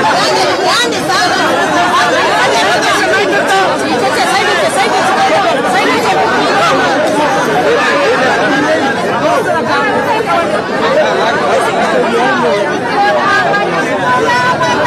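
Dense crowd chatter: many voices talking and calling out at once close around, with no single voice standing out.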